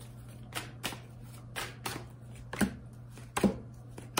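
Tarot deck being shuffled and handled by hand: a run of short, soft card slaps and riffles at an uneven pace, a few per second.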